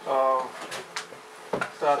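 A man speaking Latvian: one held vowel at the start, then a pause broken by three short knocks, and speech starting again near the end.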